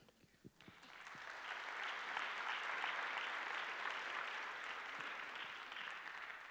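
Congregation applauding. It starts about half a second in, swells to a steady clapping, and thins out near the end.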